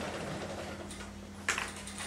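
Classroom room tone with a steady low hum and faint scattered ticks, and one sharp click about one and a half seconds in.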